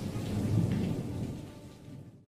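Thunder-and-rain sound effect: a low rumble with a rain-like hiss, fading away steadily.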